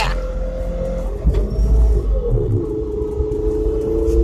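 Electric pickup's NetGain Hyper 9 drive whining steadily inside the cab under the load of towing another pickup, over a low road rumble that is heaviest between one and two seconds in. The whine dips in pitch about two seconds in, and a second, lower tone joins it near the end.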